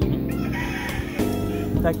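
A rooster crowing once, over guitar music.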